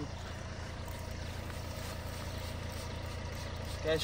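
Steady low hum with no distinct events, at a moderate level.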